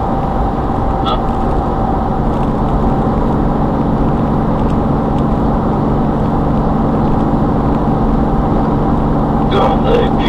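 Car driving at motorway speed, heard from inside the cabin: a steady drone of engine, tyres and road noise.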